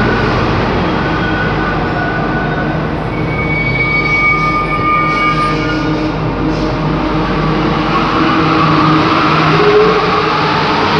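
Santiago Metro trains moving through a station: a steady running rumble with thin high whines partway through, and a rising whine near the end as a train accelerates.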